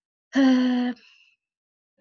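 A woman's voice holding a single flat hesitation sound, an 'eee' of about half a second, in a pause between words.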